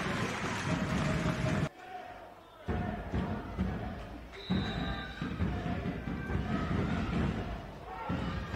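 Handball arena sound: crowd noise and shouting voices echoing in a sports hall, with a ball bouncing and thudding on the court floor. The sound almost drops out for about a second, two seconds in.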